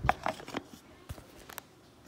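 A few light clicks and knocks from a blender jar and its lid being handled and fitted, mostly in the first second.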